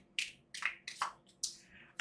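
A deck of oracle cards being shuffled by hand: about five short card slaps and flicks spread over two seconds.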